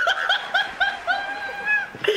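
A man laughing in a high pitch: a quick run of short 'hee-hee' bursts, about four or five a second, ending in one long drawn-out high note.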